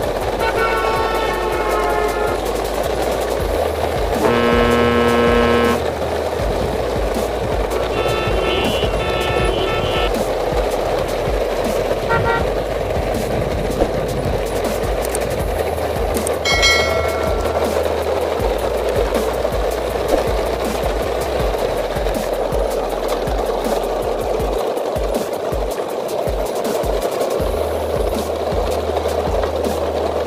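Vehicle horn honks over a steady rumbling background: a long, loud blast about four seconds in, a run of quick beeps about eight seconds in, and shorter toots later.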